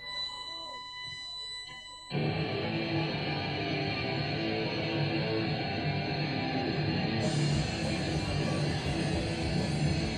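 A steady high tone sounds for about two seconds. Then a three-piece punk rock band of electric guitar, bass and drums suddenly starts a song at full volume, heard as a loud live club recording.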